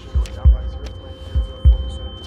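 Heartbeat sound effect: low double thumps, lub-dub, twice, over a steady hum and a high ringing tone.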